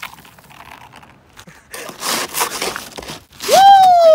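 A bare hand sweeping crusted snow and sleet off a car roof, a few short crunching scrapes in the middle. Near the end a person lets out a long, loud drawn-out cry that falls in pitch.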